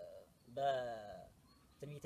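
A man chanting in the Ethiopian Orthodox liturgical style: one long drawn-out vowel that slides slowly downward in pitch, then quicker syllables beginning near the end.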